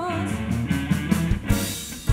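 Live pop-rock band playing: a sung note with vibrato ends just as it begins, then the drums, bass and keyboard carry on without voice. There is a sharp crash-like hit about one and a half seconds in.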